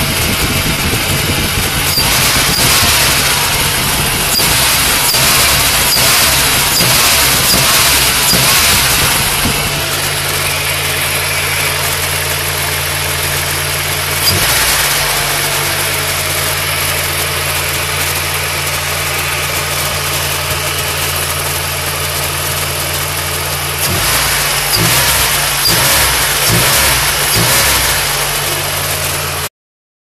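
Turbocharged Honda Civic engine being blipped repeatedly, each throttle release followed by a short sharp hiss from the newly fitted blow-off valve. It settles to a steady idle about ten seconds in, with one blip in the middle, then is blipped several more times near the end.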